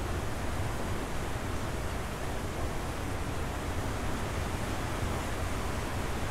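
Torrential rain falling heavily, a steady, even rushing hiss.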